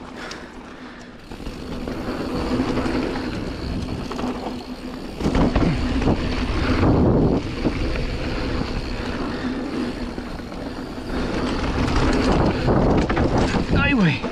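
Canyon Spectral mountain bike descending a dirt flow trail: tyres rolling and skidding over packed dirt with wind rushing over the camera microphone. The noise gets louder about five seconds in as the bike picks up speed.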